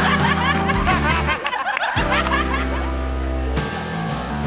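Cinema audience laughing together over background music; the laughter fades out after about two and a half seconds, leaving the music.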